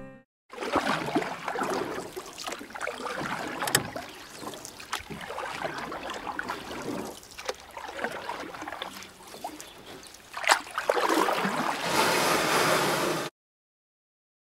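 Water lapping and splashing, with scattered sharp knocks and a few louder swells near the end, then the sound cuts off suddenly.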